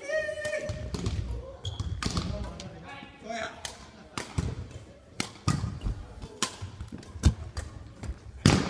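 Badminton play on a wooden gym floor: sharp racket hits on the shuttlecock mixed with thudding footsteps and shoe squeaks, the loudest strike about seven seconds in.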